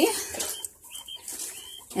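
Coturnix quail giving a few short, faint high calls.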